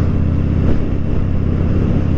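Harley-Davidson Dyna Fat Bob's air-cooled V-twin running steadily at cruising speed, under a rush of wind and road noise. The rush is strongest in the first second, as an oncoming truck goes by.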